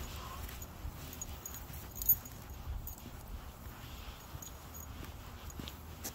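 Outdoor walking ambience: a steady low rumble of wind and handling on the microphone with scattered light clicks, and one sharp click about two seconds in.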